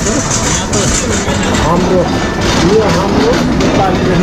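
Busy street ambience: voices of people talking nearby over a steady background of traffic noise.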